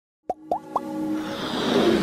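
Logo-intro sound effects: three quick rising plops about a quarter second apart, each leaving a held note behind, then a swell of noise that grows louder into the intro music.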